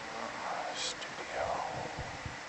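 Faint, low-volume speech from a remote participant on a call line, too quiet to make out, over a steady hiss.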